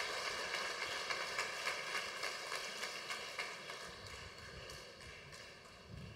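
A crowd clapping, a dense patter of hand claps that dies away gradually over several seconds.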